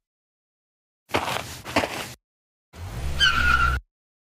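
Car sound effect: a short rush of noise, then about a second of engine rumble with a high tyre squeal as the car brakes hard to a stop.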